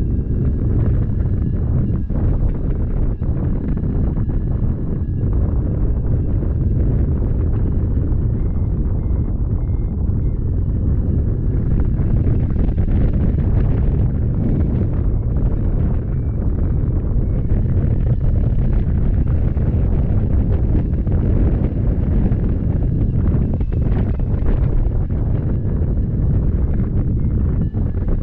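Airflow buffeting the microphone of a hang glider in flight: a loud, steady, low rushing rumble. Faint high-pitched tones run beneath it, at times broken into short beeps.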